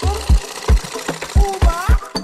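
Black domestic sewing machine driven by an add-on electric motor, running as fabric is stitched, over background music with a steady beat of about three thumps a second.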